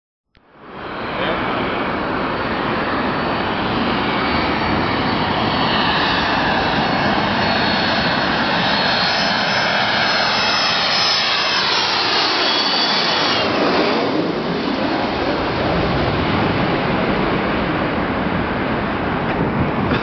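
Twin-engine jet airliner on final approach passing low overhead: a loud, steady jet roar with a high whine that falls in pitch as it comes over, about two-thirds of the way through, then roar continuing as it moves away.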